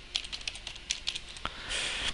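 Computer keyboard typing: a run of quick keystrokes through the first second and a half, then a soft hiss near the end.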